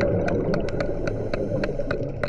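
Underwater hammer strikes on reef rock, heard as sharp, irregular clicks about five a second over a steady low rumble.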